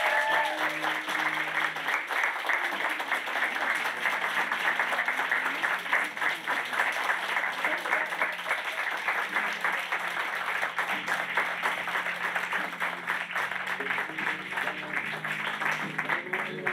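An audience applauding steadily, a dense continuous clapping, with soft music playing underneath.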